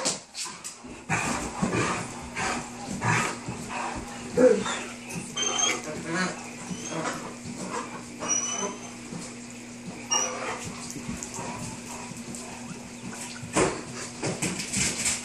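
Great Danes running about during zoomies: a string of irregular thumps and scuffs from their paws and bodies on the carpet and wood floor, with a few brief high squeaks in the middle.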